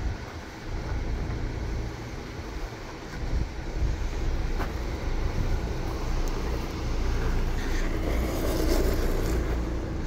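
Ford Bronco engine running at low revs: a steady low rumble with a faint constant hum above it.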